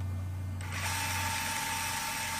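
Mechanical end-screen sound effect: a steady low hum gives way, under a second in, to a dense rattling whir with one steady high tone.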